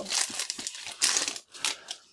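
A Match Attax foil trading-card pack crinkling as it is pulled open and the cards are slid out, in a few short rustles.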